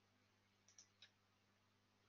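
Near silence with three faint computer clicks close together just under a second in, as the presentation is switched back a slide.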